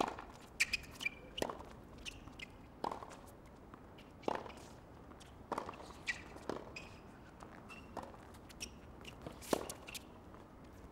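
Tennis ball being hit back and forth in a rally on a hard court: a series of sharp racquet strikes and ball bounces, roughly one every second or so, with a few short high squeaks in between.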